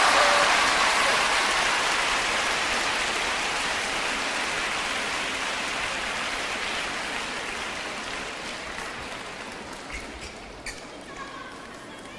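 Spectators applauding after a point, the clapping fading away slowly. A few sharp ticks of a table tennis ball come near the end.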